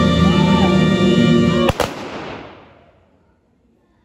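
Ceremonial music playing, cut off about two seconds in by a ragged volley of rifle shots fired as a salute. The volley sounds as two sharp cracks very close together, then echoes away.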